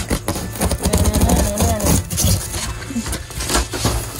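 Utility knife blade cutting through rigid foam insulation board: a rapid, irregular, crackly scraping as the blade is drawn along.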